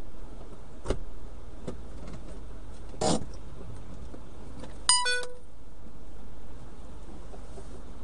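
Steady low hum of the Jeep idling, heard inside its cabin, with a short knock about a second in and a brief rustle near three seconds. About five seconds in, a Garmin dash cam gives an electronic chime of a few quick stepped tones, the cam's response to the voice command to save the video.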